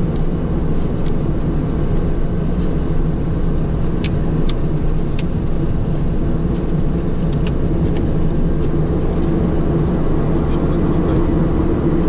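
Beechcraft King Air's twin turboprop engines running steadily at taxi power, heard from inside the cockpit as a constant low hum of several tones. A few faint clicks come in about four to five seconds in and again about seven and a half seconds in.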